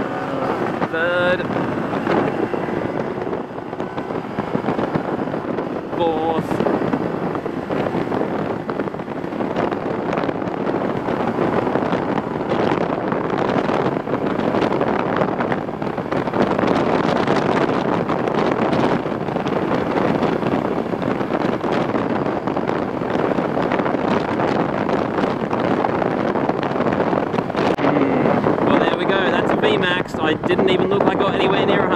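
A Honda Super Cub 110's small single-cylinder four-stroke engine held at full throttle, pulling the bike up toward its top speed of about 85 km/h, under heavy wind rushing over the microphone. Above 80 km/h the wind resistance is a bit much for it, and it struggles to go any faster.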